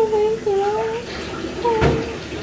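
A child's high voice making drawn-out, sliding syllables with no clear words, and a single sharp knock near the end, like a hand bumping the recording device.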